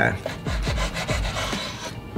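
A kitchen knife sawing through a lettuce sandwich on a wooden cutting board, the blade scraping through the bread in repeated strokes.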